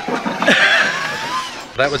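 A man laughing, his voice sliding up and down in pitch, then the start of speech near the end.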